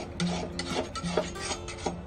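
Blacksmith's two-handled scraping shave drawn over a clamped knife blade in repeated rasping strokes, about two a second, shaving metal off the blade.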